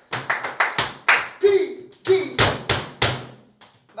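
Flamenco dancer's shoes striking the floor in a bulerías step: a quick run of lighter taps, then three heavy stamps (golpes) about a second apart between two and three seconds in.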